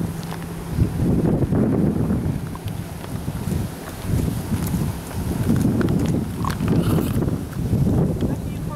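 Wind buffeting the camcorder microphone, a low rumbling that comes and goes in gusts, with a few faint clicks near the end.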